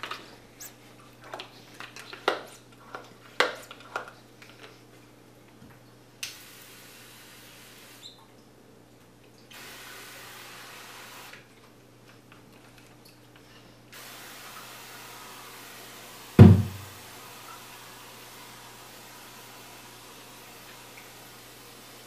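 Hand-pump garden pressure sprayer: a run of clicks and knocks as it is handled and pumped, then misting in three spells of steady hiss, the longest filling the last third. One loud thump about three-quarters of the way through, over a low steady hum.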